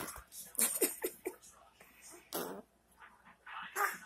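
A baby blowing raspberries with his mouth pressed against an adult's arm: irregular short spluttering bursts, a quick run of them about a second in and stronger ones about two and a half seconds in and near the end.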